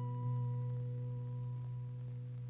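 A steady low tone with faint overtones, held unchanged and starting to fade near the end.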